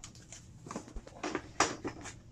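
A quick run of light knocks and scuffs, several in about a second, the sharpest one about one and a half seconds in.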